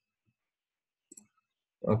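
Near silence broken by a single short click about a second in, typical of a computer mouse button; a voice starts speaking near the end.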